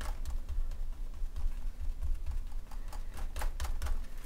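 Sponge dabbing acrylic paint through a stencil onto a journal page: a quick, uneven run of soft taps.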